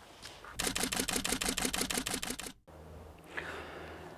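SLR camera shutter firing in a rapid continuous burst, about ten frames a second for nearly two seconds, then cutting off abruptly.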